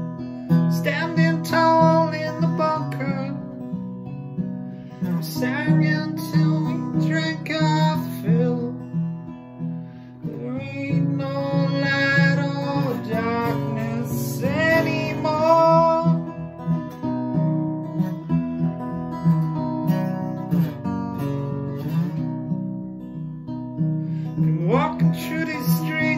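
Acoustic guitar strummed in a steady rhythm, with a man's voice singing a melody over it in short phrases. The voice drops out for several seconds past the middle, leaving the guitar alone.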